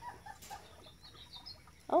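Quiet backyard ambience with a few faint, short bird calls scattered through it. A woman's voice says "Oh" right at the end.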